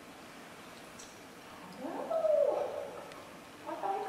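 Quiet lecture-room tone, then one short voiced sound about two seconds in that rises and then falls in pitch, like a drawn-out 'hmm', with speech starting again near the end.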